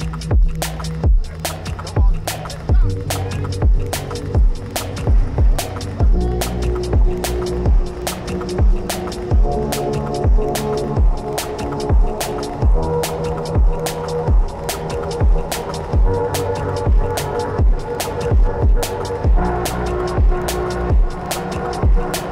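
Background music with a steady beat and sustained notes.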